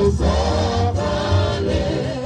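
Live gospel worship music: a choir singing held notes over a band with a heavy, steady bass.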